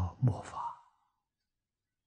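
A man speaking Chinese in a lecture. His voice stops within the first second, leaving near silence.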